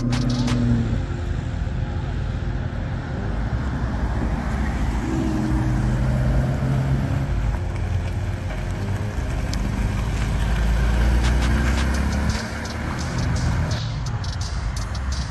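Sports car engines driving past on the street, among them a Porsche Cayman. The engine note climbs about five seconds in, and a deep low rumble swells about ten seconds in, then fades.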